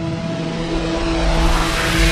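Channel logo sound effect: a rush of noise over low held tones, building steadily louder.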